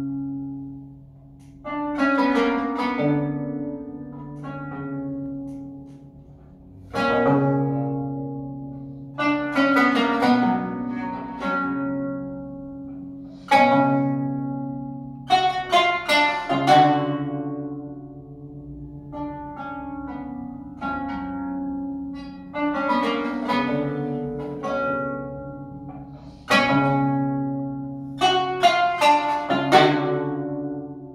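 Solo qanun, the plucked Armenian zither, playing a slow melody: single plucked notes and quick clusters of notes that ring out and fade over low strings left sounding.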